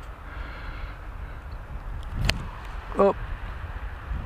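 Wind rumbling on an outdoor microphone, with no motor running, during an unpowered hand-launched glide test of a foam RC plane. A single sharp click sounds a little over two seconds in.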